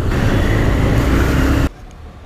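Motorcycle riding noise: wind rushing over the microphone mixed with the bike's engine and surrounding traffic, cutting off suddenly near the end.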